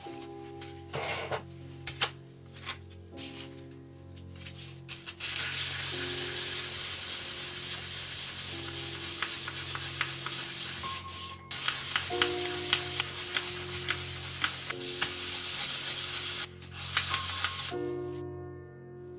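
Hand sanding a thin sheet of figured wood with sandpaper: a few scattered scrapes and taps at first, then steady rubbing strokes from about five seconds in, pausing briefly twice.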